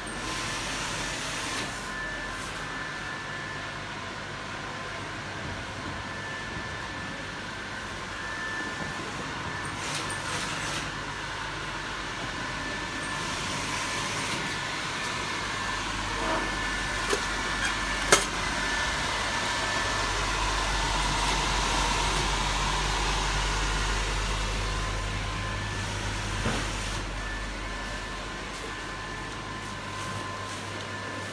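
Electric air blower running steadily to keep an inflatable shell inflated: a constant whir with faint steady high tones, a little louder in the middle, with one sharp click about eighteen seconds in.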